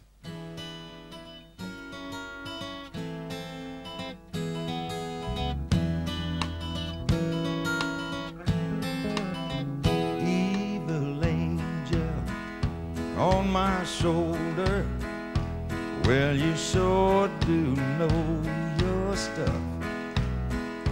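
Live country band playing a song's instrumental intro: strummed acoustic guitar and held chords, with the bass coming in about five seconds in. A sliding lead melody plays over the band in the second half.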